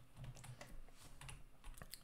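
A few faint computer-keyboard clicks, single keystrokes spread out over two seconds.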